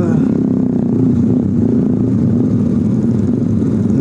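Motorcycle engine running steadily at low speed, with other motorcycles around it.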